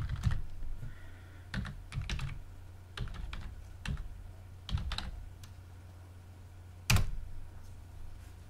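Typing on a computer keyboard: scattered, irregular key clicks, with one louder click about seven seconds in.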